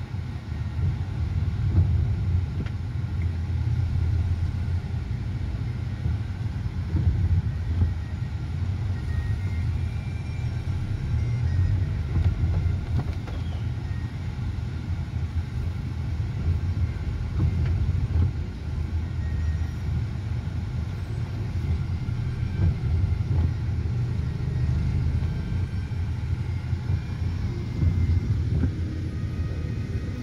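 Steady low rumble of a car's engine and tyres heard from inside the cabin while driving slowly in city traffic.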